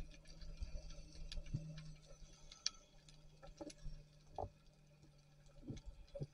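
Faint underwater ambience along a rocky reef: irregular sharp clicks and ticks over a steady low hum.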